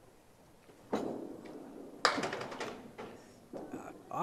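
A candlepin bowling ball hits the lane about a second in and rolls, then strikes the pins with a sharp wooden clatter about two seconds in. A few more knocks follow near the end as pins settle.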